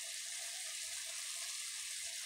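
Steady sizzle of diced potatoes and onions frying in oil in a pan.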